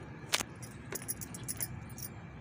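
Sprouted fenugreek seeds being scattered by hand into a pot of soil: a scatter of small sharp clicks and ticks, the loudest about a third of a second in.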